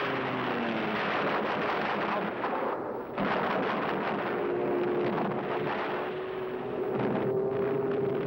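Dense battle din of gunfire and explosions, with a droning aircraft engine whose pitch falls near the start. The din dips briefly just before three seconds in, then resumes suddenly.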